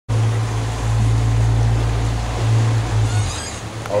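Low steady rumble of a boat under way, with water and wind noise; the rumble drops away shortly before the end.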